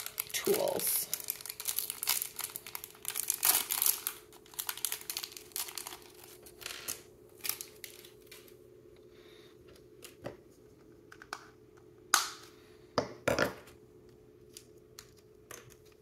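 Thin plastic packaging crinkling and tearing as a small clear bag of miniature toy pieces is opened by hand for the first few seconds. After that come scattered light clicks and taps of small plastic pieces being handled, with a few louder knocks near the end.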